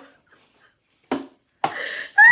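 A person talking, broken by about a second's pause, then one short word and talking again.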